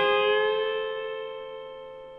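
Electric guitar, a Fender Stratocaster played through an amp: the last notes of a phrase, struck just before, ringing on and fading out steadily.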